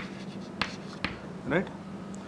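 Chalk writing on a chalkboard: three sharp taps of the chalk against the board as a word is finished, the last two about half a second apart.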